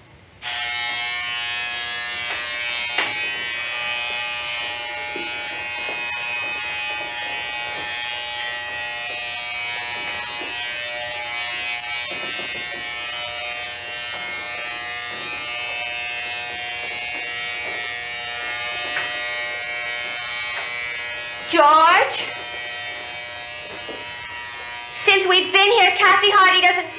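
Electric shaver buzzing steadily, switching on about half a second in. Near the end a woman's voice calls out loudly over the buzz, twice.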